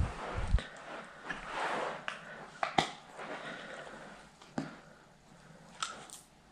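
Quiet handling noises: a few light clicks and taps with soft rustling, as small screws and flat-pack panels are picked up and moved.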